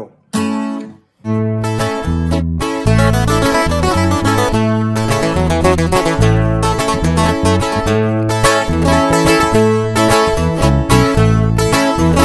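Acoustic guitar in the key of A playing a ranchero-style fill over a balanceado rhythm: a brief strum just after the start, a short pause, then steady playing with prominent bass notes.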